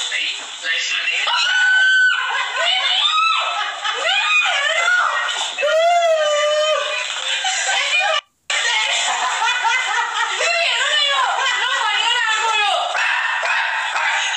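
Several people shrieking, laughing and talking excitedly over one another in a small room, with high, sweeping squeals. The sound drops out for a moment just after eight seconds, where one clip ends and the next begins.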